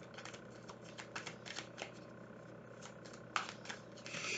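Deck of tarot cards being shuffled by hand: a run of irregular soft card flicks and riffles, the sharpest about three and a half seconds in.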